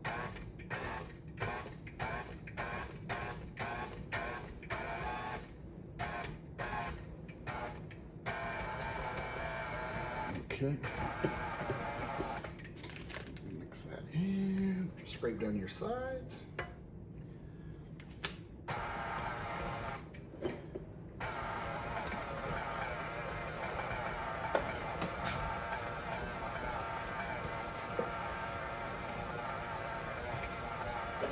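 KitchenAid stand mixer running, its flat beater working cream cheese, butter and powdered sugar into frosting. For the first several seconds the sound pulses about twice a second, then it settles into a steadier run.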